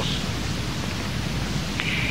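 Steady hiss of recording background noise with a low hum underneath.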